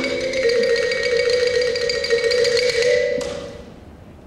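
Marimba played with two mallets: a fast run of rapid repeated strokes, stopping a little after three seconds, with the last notes ringing and dying away.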